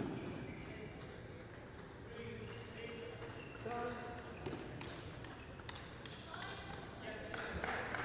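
Table tennis rally: a plastic ball clicking repeatedly off the rackets and the table, with the hall's echo behind it.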